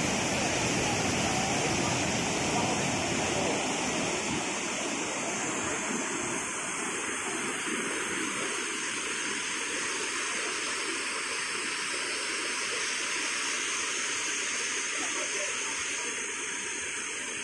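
Floodwater rushing across a road with a steady, loud rush of water; about four seconds in the deep rumble drops away and the rush goes on lighter.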